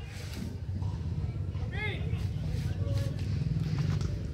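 A steady low rumble, with one short call of a voice about two seconds in.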